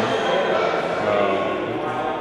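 Speech: a person's voice talking, with no other distinct sound.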